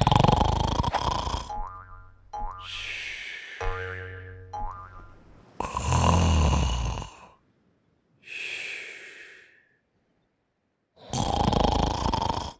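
Cartoon snoring sound effect: a string of long, noisy snores, each about a second, with pauses between them. Between the first two snores comes a buzzing pitched tone with short rising whistles.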